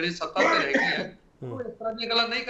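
Speech with a throat clearing, and a short break a little past the middle.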